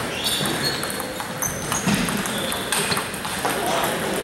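Celluloid-type table tennis ball clicking off paddles and the table during a short rally, a string of sharp light ticks over the steady murmur of voices and other tables' ball clicks in a large gym hall.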